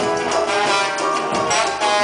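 Live band playing the instrumental introduction of a samba, with sustained melody notes over steady percussion.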